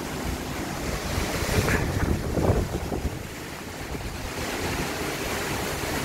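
Strong storm wind rushing through the trees in gusts, with wind buffeting the microphone; a gust swells about two seconds in.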